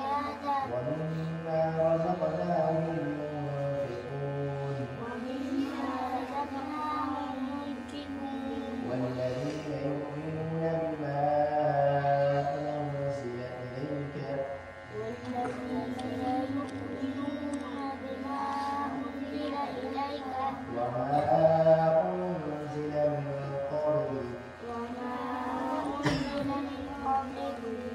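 Quran being recited aloud in a melodic, chanted style by a single voice, in long drawn-out phrases with short pauses between them.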